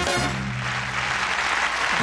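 A live band's last chord, struck with a final accent and then dying away, as audience applause swells up.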